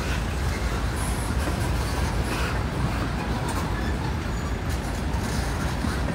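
Freight train of tank cars and covered hopper cars rolling past close by, a steady rumble of wheels on rail.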